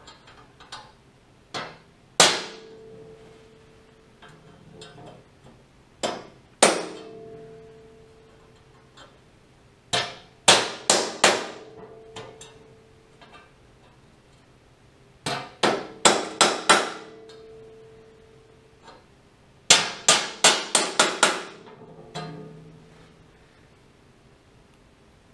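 Ball-peen hammer tapping a steel transfer punch set through holes in a sheet-steel panel, marking hole positions on the part beneath. The sharp metallic taps each leave a brief ring, first singly, then in quick groups of four to six.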